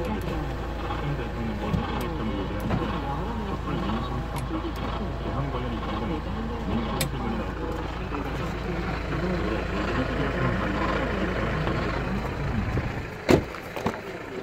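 Steady low hum inside a 2003 Kia Sorento's cabin, with a person's voice over it. Near the end a single loud thump as a car door shuts, after which the hum drops away.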